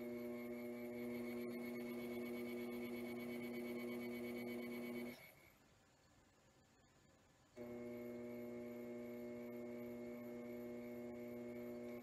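Electric potter's wheel motor giving a steady electrical hum with a few overtones. It cuts out about five seconds in and starts again about two and a half seconds later.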